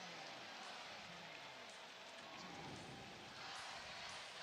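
Faint, steady stadium crowd noise.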